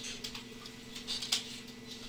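A few light computer keyboard and mouse clicks, the clearest about a quarter second and a little past a second in, over a steady low electrical hum.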